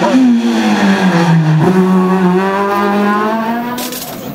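Renault Clio rally car's engine at high revs, the pitch falling steadily as the car slows for a bend, then jumping up about one and a half seconds in as it downshifts, and holding fairly steady through the corner. A short burst of noise comes just before the end.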